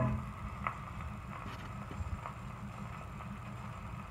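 The band music stops. The RCA Victor Victrola 55U's pickup then rides the run-out groove of the turning 78 rpm shellac record, playing a low steady rumble and faint surface hiss with soft repeating clicks.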